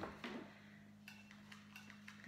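Faint scattered clicks and rustles of a hot glue gun and an artificial-flower wreath being handled, over a steady low hum.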